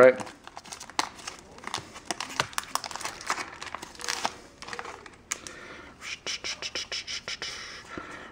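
Foil wrapper of a Magic: The Gathering booster pack crinkling and tearing as it is ripped open and peeled back from the cards, with a quick run of crinkles near the end.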